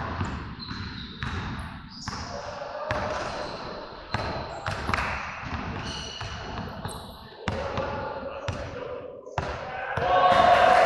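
Irregular thumps and knocks, roughly one a second, with people's voices.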